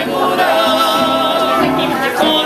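A male bolero trio singing held notes in close harmony with a wide vibrato, accompanied by nylon-string acoustic guitars.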